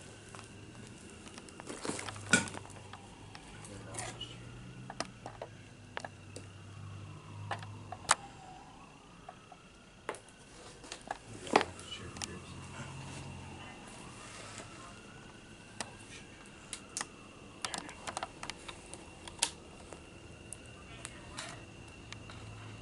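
A distant emergency siren wailing, its pitch rising and falling slowly every five seconds or so, under sharp clatters and knocks of debris close by, several of them louder than the siren. A faint steady high whine runs underneath.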